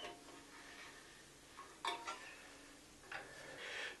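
Faint metallic clicks and light handling noise from a hex key working the set screws on a bandsaw's steel blade guides, with one clearer click just under two seconds in.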